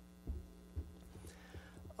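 Faint steady hum in a pause between a speaker's sentences, with two soft low thumps in the first second.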